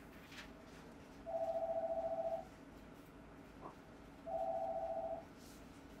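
Telephone ringing twice: a warbling, trilled ring about a second long each time, with a pause of about two seconds between the rings.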